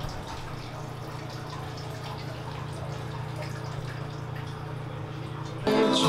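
Steady restroom ambience: a low hum under an even hiss like running water. Near the end it cuts abruptly to live country music on acoustic guitar.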